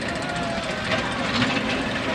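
Distant voices over a steady background rumble, with a few faint knocks about a second in.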